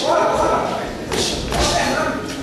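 Two dull thuds from the boxers in the ring, a little over a second in, with a voice calling out just before them.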